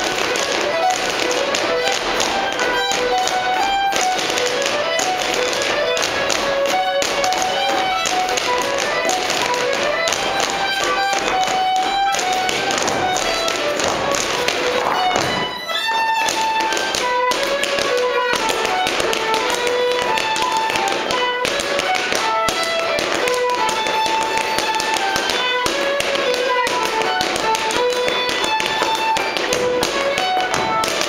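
A fiddle playing a lively dance tune, with dancers' shoes tapping and stepping in rhythm on a wooden floor. The music breaks off briefly about halfway through, then goes on in a higher range.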